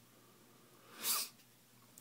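A single short breathy huff, a person exhaling sharply through the nose, about a second in; otherwise near silence.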